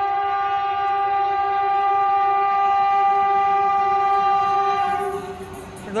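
Train horn sounding one long, steady blast on two tones that stops about five seconds in, with the noise of the arriving train underneath.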